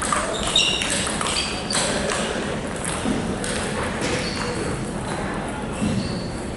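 Table tennis rally: the plastic ball clicks off the paddles and table in a quick series through the first two seconds or so, then more sparsely, with the echo of a large hall.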